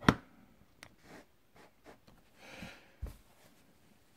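Quiet handling noises while the camera setup is adjusted by hand: a sharp click just after the start, a few light taps, a brief soft rustle about two and a half seconds in, and a low knock about three seconds in.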